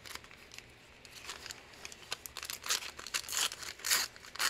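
Crinkled paper handled and torn by hand: a run of short, dry crackles and rips, sparse at first and busier over the last two seconds.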